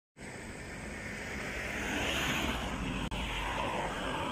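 Steady outdoor rushing of road traffic and wind, swelling about halfway through, with a brief dropout a little after three seconds.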